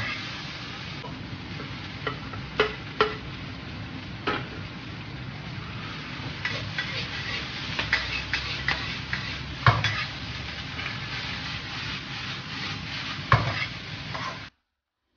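Metal spatula scraping and clanking against a black wok while soybean sprouts and Chinese chives are stir-fried over a gas flame, with steady sizzling underneath. A few sharp clanks stand out, the loudest about two-thirds of the way through and near the end.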